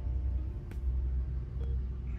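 A steady low rumble with a couple of faint clicks.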